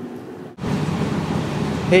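Steady low background hum with hiss, starting abruptly about half a second in where the recording cuts. A man's voice begins right at the end.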